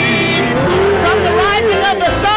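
Gospel praise singing: worship team voices on microphones, one voice holding a long wavering note, over a low sustained instrumental accompaniment.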